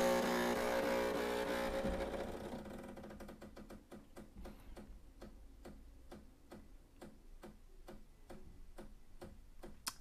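Decent DE1 espresso machine starting a shot: a steady hum fades away over the first two seconds or so. It is followed by faint, regular ticking at about three a second as the shot goes into pre-infusion.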